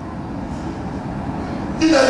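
A steady low rumble of room noise, then a man's voice through a microphone breaking in loudly near the end.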